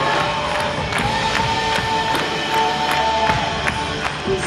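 Live worship band playing an upbeat song with a steady drum beat under long held notes.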